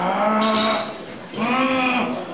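Two long, drawn-out men's shouts of encouragement to a bench presser, each just under a second, the second a little higher in pitch.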